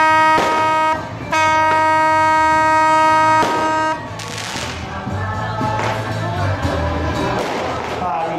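Vehicle horn sounding one steady note. The first blast cuts off about a second in, and the horn sounds again in a long blast that ends about four seconds in. After that comes a lower, noisier mix of street sound.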